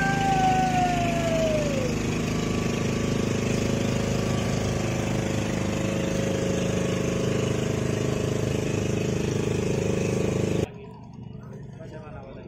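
Motorboat engine running steadily as a wooden passenger boat moves past on the river, with a brief falling whistle-like tone in the first two seconds. The engine sound cuts off abruptly about a second before the end.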